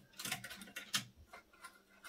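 Small brush scrubbing lint and gunk out of the bobbin hook area of a Brother multi-needle embroidery machine: light, irregular scratchy ticks of the bristles against the metal hook assembly.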